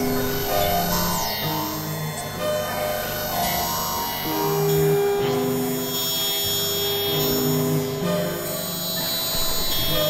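Experimental electronic synthesizer music: a run of held synth tones that change pitch every half second to a second, with one longer held note in the middle, over a bed of steady high tones.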